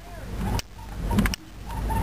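Car driving slowly, heard from inside the cabin: low road and engine rumble that swells and then cuts off sharply about three times.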